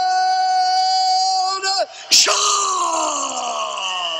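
A man's voice in a ring announcer's style, holding one long, drawn-out shouted syllable for about two seconds. About two seconds in comes a sudden loud burst, then a long cry that slides down in pitch.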